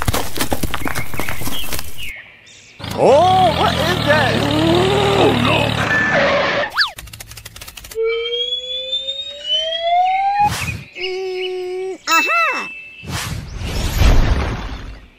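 A string of cartoon sound effects. Dense crackling clicks come first, then a squeaky, warbling cartoon-like voice. After that a quick upward whistle and a long rising whistle glide, and near the end a few springy boings.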